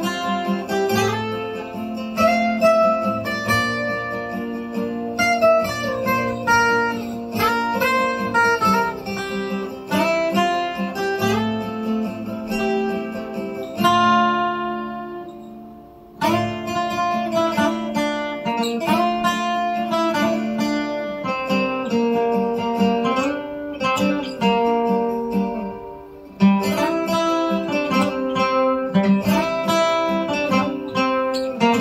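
Solo acoustic guitar picking a melody note by note over lower bass notes. About 14 s in, a chord is left to ring out and fade for about two seconds, and there is a short pause near 26 s before the playing picks up again.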